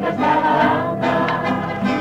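A mixed choir singing a traditional song from Pigna, accompanied by a mandolin ensemble.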